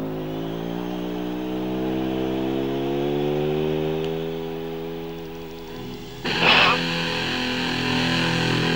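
Live rock performance: a single sustained electric guitar tone slides slowly down and then back up in pitch for several seconds. Just past six seconds in, a loud crash brings the full band back in.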